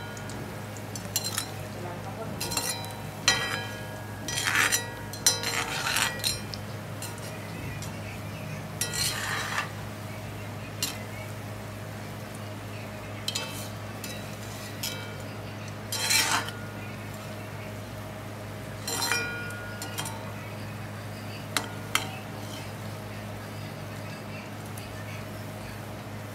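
A perforated metal skimmer clinks and scrapes against a wok as it turns fritters frying in oil. There are a dozen or so short ringing knocks, bunched in the first six seconds and then spaced out. Under them runs the steady hiss of the frying oil and a low hum.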